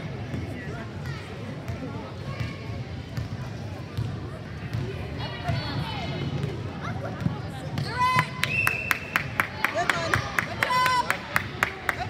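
Gym sounds of a basketball game: background chatter, then from about eight seconds in a basketball bouncing on a hardwood floor in an even rhythm, about three bounces a second. Short high squeaks, typical of sneakers on the court, come in among the bounces.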